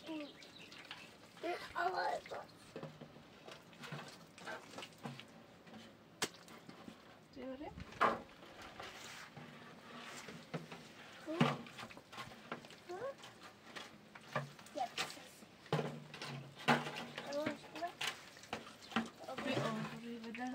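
Intermittent, indistinct voices with a few sharp clicks or knocks between them.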